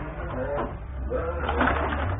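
Rods and plastic players of a Benej table hockey game clicking and rattling during play, with brief low voices in the room.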